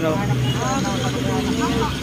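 Steady low hum of a motor vehicle's engine passing on the road, under faint talk.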